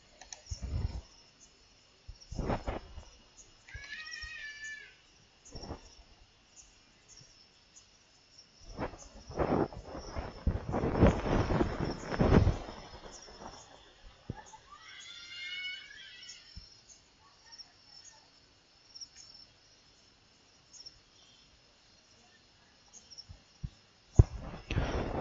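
Faint, scattered background sounds: several short knocks and rustles, and two brief high pitched calls that bend in pitch, about four and fifteen seconds in.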